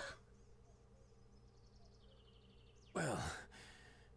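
A man's sigh about three seconds in, short, its voiced pitch falling steeply, after near silence.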